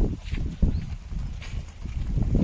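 Hooves of a pair of oxen plodding along a dirt lane as they pull a loaded bullock cart, heard as irregular low thuds with the cart rumbling along.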